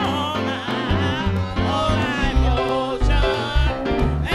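Church choir singing with vibrato, with electronic keyboard accompaniment and a low bass line underneath.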